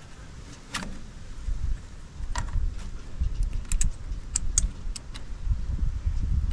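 Small sharp metallic clicks and ticks from a wire terminal being handled and fitted on the back of a tractor starter motor. There are a few single clicks, then a quick cluster in the second half, over a low, uneven rumble.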